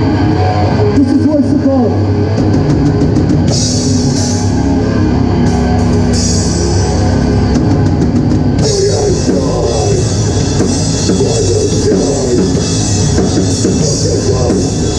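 Hardcore band playing live: distorted electric guitar, bass and drum kit with cymbals. The cymbals and drums pick up about eight and a half seconds in.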